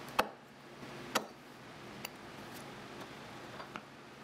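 Leather round knife cutting through leather onto a cutting board: two sharp clicks about a second apart, then a few faint ticks.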